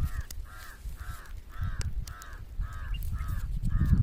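A bird calling over and over in a steady series, about two short rising-and-falling calls a second, over a low rumble.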